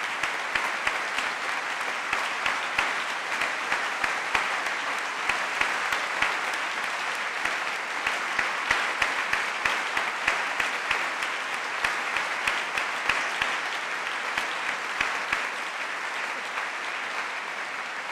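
Audience applauding: steady clapping from many hands, easing a little near the end.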